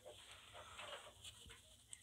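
Near silence: room tone with faint, soft handling noises of playing cards being gathered on a desk.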